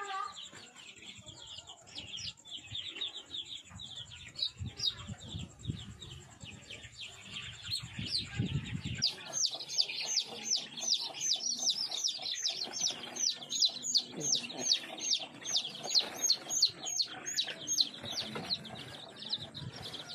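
A group of young chicks peeping: a constant run of short, high, falling peeps. The peeps grow louder and come thicker about halfway through.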